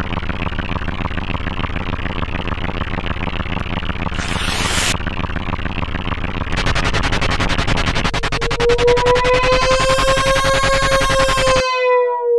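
Electronic soundtrack: a dense, loud synthesizer buzz, with a short burst of hiss about four seconds in. A fast, even pulsing joins past the halfway point, then a held synthesizer note slowly rises and dips before the sound cuts off just before the end.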